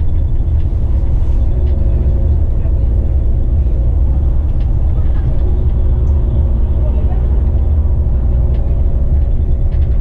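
Inside a moving coach on a highway: the bus's engine and tyre noise make a steady low rumble, with a few faint steady engine tones above it.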